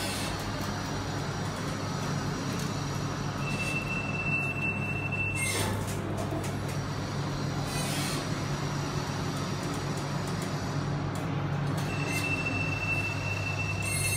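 Express GEC traction elevator standing at a landing with its doors cycling: a steady low hum throughout, a thin steady high whine lasting about two seconds around four seconds in and again near the end, and a few sharp clicks.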